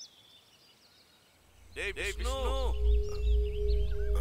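Faint bird chirps over near quiet, then a deep rumbling drone swells in about a third of the way through, with a brief human voice around the middle, settling into a steady held tone: a horror film's background score.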